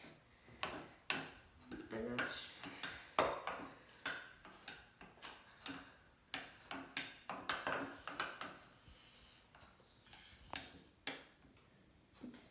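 A metal spoon clinking against the inside of a small drinking glass as eggnog is stirred: a dozen or so light, irregular clinks that grow sparser near the end.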